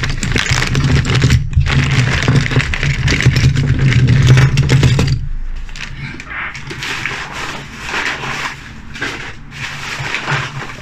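Clear plastic bag crinkling and rustling as hands work it open and tip out a load of diecast toy trucks, with small clicks and knocks of the metal toys. The loudest handling stops about five seconds in, leaving lighter rustles and taps.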